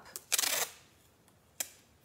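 Green painter's tape pulled off its roll: a short ripping rasp about a third of a second in, then a single sharp click near the end.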